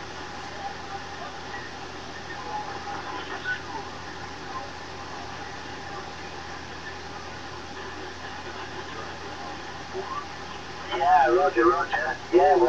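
CB radio receiver hiss and static, steady throughout, with a weak voice faintly heard through the noise in the first few seconds and a stronger voice coming in near the end. The noise is the poor skip conditions the operators put down to solar noise in the ionosphere.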